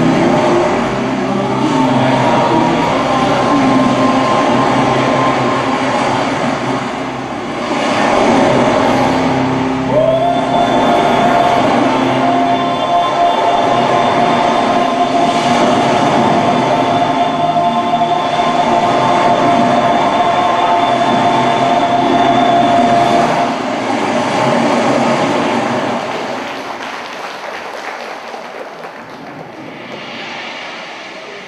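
Loud backing track for a stage dance played over the hall's sound system: a dense rumbling wash with long held tones, one sliding up about a third of the way in and holding for several seconds, then fading out near the end.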